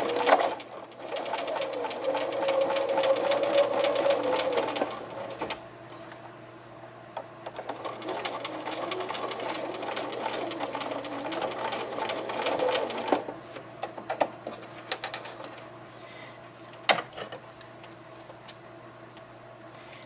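Electric sewing machine stitching a seam with back-tacking at the ends: rapid, even needle strokes, louder for the first few seconds, stopping about two-thirds of the way through. A couple of sharp clicks follow near the end.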